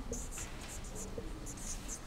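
Marker pen writing on a whiteboard: a quiet series of short, squeaky strokes as a heading is written.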